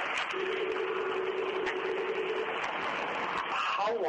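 Loud, steady hiss of a low-fidelity audio recording, with a low steady tone for about two seconds in the first half; a voice starts faintly near the end.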